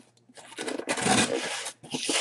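Cardboard shipping box being handled and moved on a wooden tabletop, rubbing and scraping irregularly, starting about a third of a second in.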